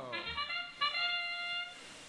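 FIRST Robotics Competition field's electronic match-start signal marking the start of the autonomous period: two long, steady, brassy notes, one after the other.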